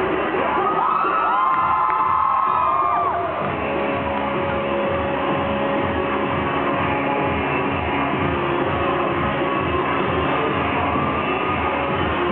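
Music with a steady beat, with a crowd cheering and whooping over it in the first three seconds or so.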